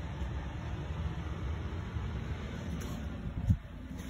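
Steady low rumble of a hand-held phone being carried while walking, with one dull thump about three and a half seconds in.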